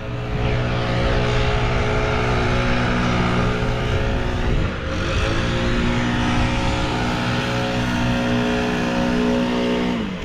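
An engine running steadily at a constant pitch, with a brief dip about halfway through.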